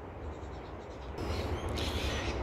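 Quiet outdoor background noise with a steady low rumble, joined about halfway through by a soft rustling hiss.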